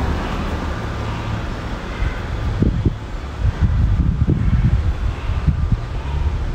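Wind buffeting the microphone in uneven low gusts, from about halfway through, over a steady low outdoor rumble.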